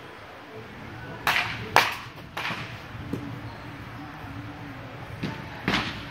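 A baseball bat hitting tossed balls in a netted batting cage: sharp cracks in two clusters, the loudest a little under two seconds in, with more hits near the end.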